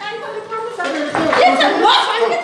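Several people talking over one another with raised voices, a jumble of overlapping speech that swells about a second in.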